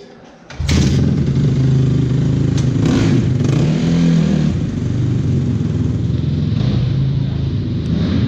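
Dirt bike engine firing up suddenly about half a second in and running, its revs rising around three to four seconds in as the bike pulls away.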